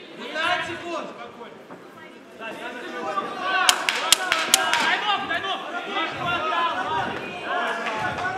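Indistinct voices shouting across a large hall, with a quick run of about five sharp wooden knocks about four seconds in. The knocks are the ten-second warning clapper banged at the cage, marking ten seconds left in the round.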